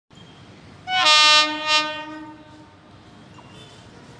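Horn of an approaching WAP-7 electric locomotive: one blast of about two seconds on a single steady note, starting loud with a second swell before it fades away.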